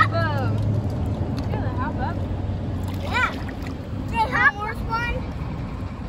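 Riverside outdoor sound: a steady rushing noise of the river and wind, with short, high-pitched calls and shouts of children several times.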